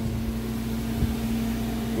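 Ice merchandiser freezer running with a steady hum and one constant low tone. It is the evaporator fan motor, turning again now that its rust-stuck rotor has been freed, together with the running condenser.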